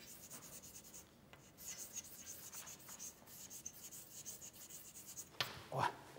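Chalk writing on a blackboard: a faint run of short, quick scratching strokes as a word is written out.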